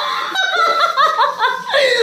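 A woman laughing: a quick run of short laughs that stops shortly before the end.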